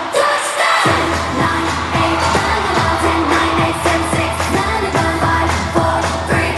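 K-pop song with female group vocals, played loud over an arena sound system during a live performance. About a second in, a heavy bass line and a steady kick-drum beat come in.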